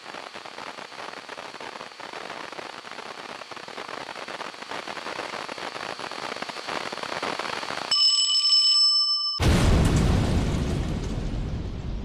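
Sound-effect sequence: a crackling hiss with a faint high whine that slowly grows louder, cut off by a brief bell-like ringing tone, then a sudden deep boom that dies away over a couple of seconds.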